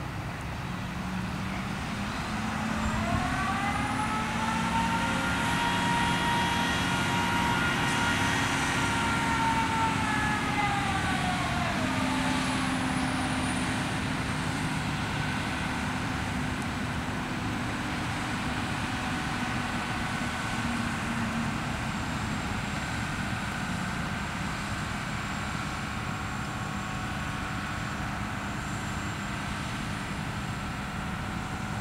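Grove GMK6300L mobile crane's engine running under load as it hoists, a steady rumble. About three seconds in, a pitched whine rises, holds for several seconds and falls away again about twelve seconds in.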